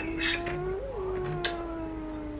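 A recorded wailing moan played through a phone's speaker: one long held note with a brief rise and fall in pitch about a second in. It is the eerie sound said to be a man crying for help on a 'haunted' phone number.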